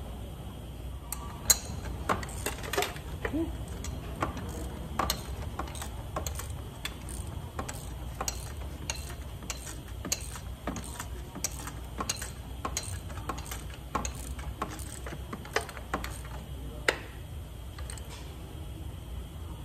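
Hand ratchet wrench clicking in irregular short runs as fasteners in a car's engine bay are tightened, with a sharp louder click about a second and a half in and another near the end, over a steady low hum.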